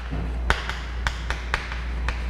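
Chalk tapping against a chalkboard as letters are written, a quick, uneven series of short sharp taps.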